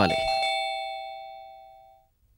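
Doorbell chime struck once: a bright, bell-like tone of several pitches that rings and fades away over about two seconds.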